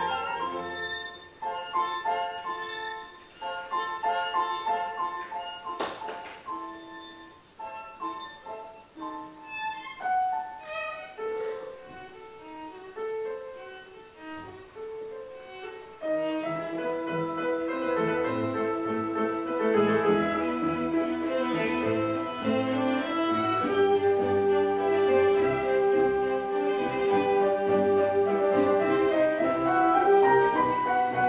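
Classical orchestra playing with violin, cello and piano soloists. A quieter, sparser passage gives way about halfway through to a louder, fuller one.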